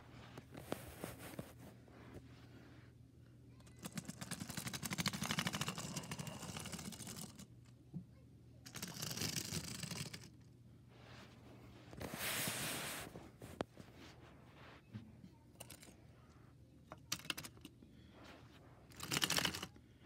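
Plastic toy train engine and flatbed wagon rattling along plastic toy track in several separate bursts of dense clicking, with quieter stretches between.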